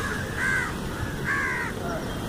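A bird calling twice, two short arched calls about a second apart, over steady background noise.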